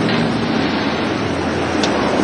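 Steady running noise of a moving vehicle, with a low even hum underneath.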